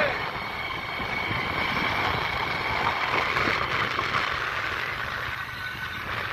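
Steady riding noise from a motorbike on the move: wind rushing over the microphone with the engine running underneath.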